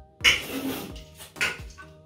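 Faint background music, with a couple of short rustles and knocks as grocery items are handled.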